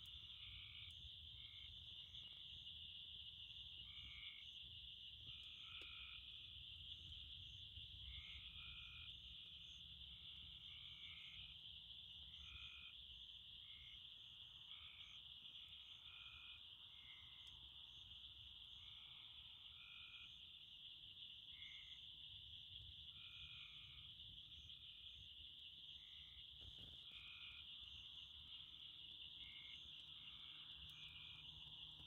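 Faint night chorus: frogs calling in short repeated notes, roughly once a second, over a steady high insect drone.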